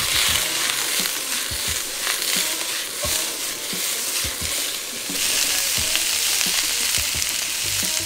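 Sliced onion, bell peppers and carrot sizzling hard in oil in a wok over a high gas flame, with scattered light knocks as the wok is tossed.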